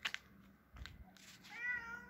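A cat meowing once near the end, one short call that bends in pitch, after a few faint clicks and taps.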